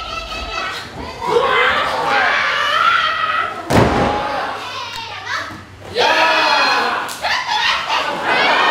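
High-pitched shouting and yelling in a wrestling ring, with one loud thud of a body hitting the ring mat just before halfway.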